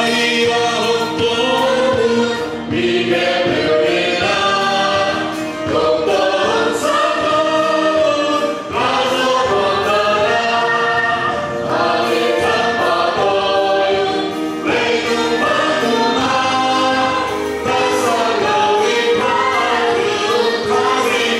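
Congregational worship song: many voices singing together with a live band that includes guitars, in phrases a few seconds long.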